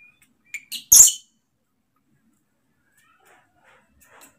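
Baby long-tailed macaque giving three short, shrill squeals in quick succession about half a second in, the last one the loudest.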